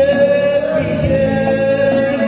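Live Greek folk music: a man singing a long held note, accompanied by a plucked laouto and a keyboard.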